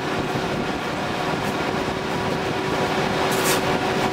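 DR V 75 diesel-electric locomotive under way, heard from its open cab window: a steady running noise of engine, wheels and wind with a held humming tone. A brief high hiss comes about three and a half seconds in.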